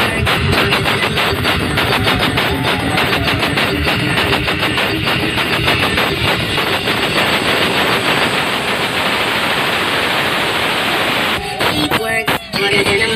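The Kartika truck-mounted sound system, a wall of stacked loudspeaker cabinets, playing music very loud, with a rapid rattle of drum hits that smooths into a dense, even wash in the second half and breaks off briefly near the end.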